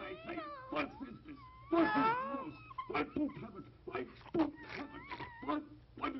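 Several short, high, wavering cat-like wails, with pauses between them.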